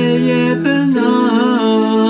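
A cappella vocal ensemble holding a sustained chord in several voice parts, moving to a new chord about a second in, with slight vibrato in the upper voices.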